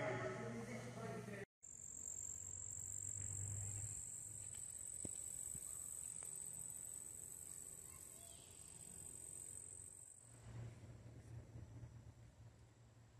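Steady, shrill insect chorus, one continuous high-pitched buzz that starts about a second and a half in and fades out near the ten-second mark.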